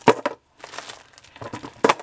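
Small plastic zip-lock bags full of beads crinkling as they are handled and shifted about, with a sharp crackle just after the start and another near the end.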